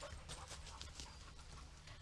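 Faint footsteps rustling and ticking irregularly through dry leaf litter on a woodland floor, over a low steady rumble.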